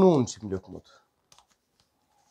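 A man speaking a short phrase in Kashmiri, followed by a few faint clicks about a second and a half in.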